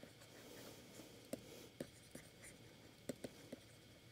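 Faint taps and scratches of a stylus writing on a pen tablet: a handful of light ticks spread through, over near-silent room tone.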